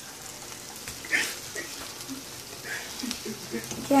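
Egg and bean mixture frying faintly in a pan on the stove, a soft steady sizzle with a couple of brief small sounds about a second in and near three seconds.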